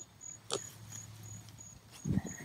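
An insect in the grass chirping steadily, a short high chirp about three times a second, with one sharp click about half a second in.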